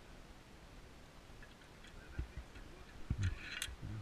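Steel zipline carabiners clinking and clicking as they are handled on the cable trolley: a few soft knocks, then a short run of sharp metallic clicks about three seconds in.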